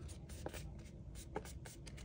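Faint rustling and scraping of folded 65 lb cardstock being handled and creased by hand, with a few soft ticks of the paper.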